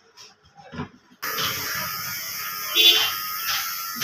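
Steady hiss of room noise that starts abruptly about a second in, with a brief pitched, voice-like sound about three seconds in.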